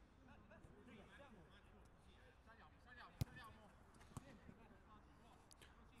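Faint, distant voices of players calling on the pitch, with one sharp kick of a football about three seconds in and a lighter knock about a second later.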